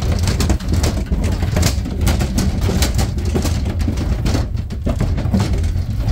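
Sheep hooves scrambling and clattering on a livestock trailer's metal chequer-plate floor, with repeated knocks, as a ewe that had gone down in the packed trailer is got back onto her feet. Under it runs a low, steady rumble of wind on the microphone.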